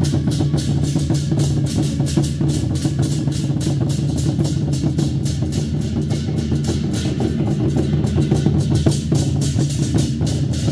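A Taiwanese war-drum troupe playing large barrel drums in a fast, even beat, with hand cymbals clashing in time on the strikes.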